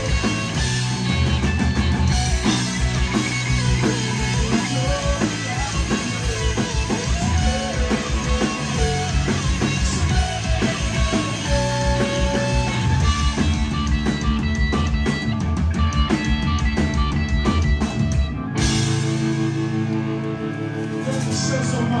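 Rock band playing live: electric guitars, bass and a drum kit. About eighteen seconds in the drums stop abruptly, and held guitar and bass notes ring on as the song ends.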